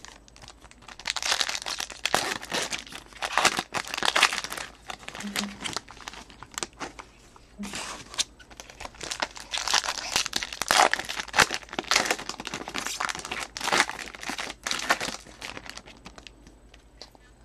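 Foil wrappers of Bowman baseball card packs crinkling and tearing as the packs are opened by hand, in irregular bursts of rustling, with cards being handled between them.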